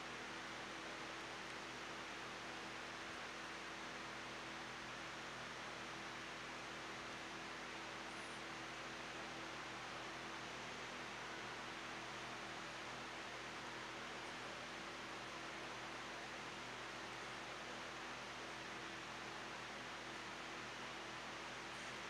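Steady hiss with a faint low hum underneath: the background noise of an open microphone and recording chain, with nothing else heard.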